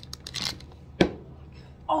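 Close handling noise: a brief rustle, then one sharp knock about a second in, the loudest sound here, as things are moved about right next to the phone's microphone.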